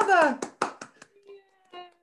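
A few hand claps, about four, in the first second, just after a woman's drawn-out word falls away; faint pitched sound follows.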